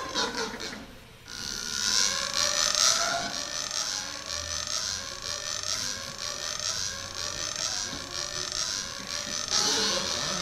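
Steel-string acoustic guitar being played, starting about a second in after a few knocks, with repeated rising glides in pitch running through the playing.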